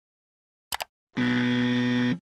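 Electronic sound effects of an animated logo: a quick double click about three quarters of a second in, then a steady electronic buzz lasting about a second.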